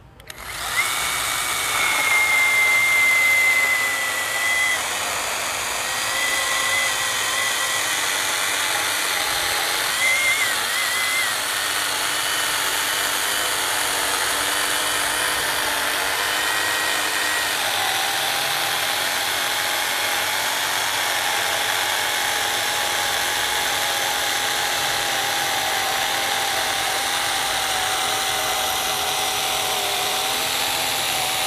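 Cordless DEKTON battery chainsaw cutting through a thick log, its electric motor and chain whining continuously as the chain chews through the wood. The cut starts about half a second in; the high whine wavers in pitch through the first dozen seconds, then settles to a lower, steady tone.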